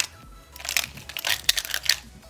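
Plastic Square-1 puzzle being turned by hand: after a brief pause, a quick run of clicking and clattering layer turns and slice moves.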